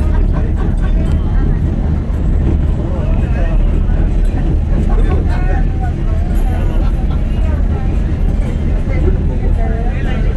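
Passenger train running, a steady low rumble heard from inside the carriage, with people's voices talking over it.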